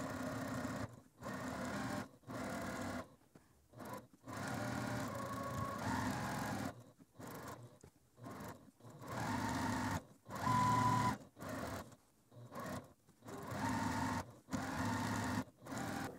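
Domestic sewing machine, a Juki TL2000Qi, stitching a quarter-inch seam along a pinned bias edge in short runs of a second or two, stopping and starting several times.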